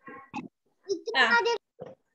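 A child's voice over a video call: a short high-pitched call about a second in, with softer scraps of voice around it.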